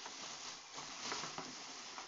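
A plastic shopping bag rustling and crinkling steadily as a hand rummages inside it to pull out an item.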